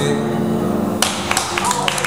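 An acoustic guitar's last chord rings out, and about a second in the audience starts clapping as the song ends.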